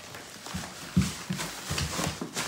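Footsteps on a hardwood floor: a handful of low thumps, the loudest about a second in.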